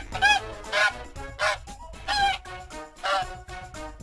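Goose honking, about five short honks in a row, over cheerful children's background music.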